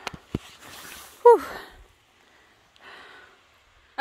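A woman out of breath on a steep climb: two short clicks at the start, a heavy breath out, a voiced "whew" a little over a second in, and another faint breath out near the end.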